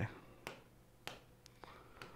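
Three faint, sharp taps about half a second apart on the screen of an interactive display board, made as a tool is picked from its on-screen menu.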